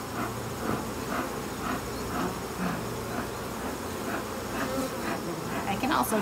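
Many honey bees buzzing steadily around an open hive. Some of them are robbers from other colonies, drawn by the smell of opened honey; the beekeeper sees a little robbing but nothing worrying.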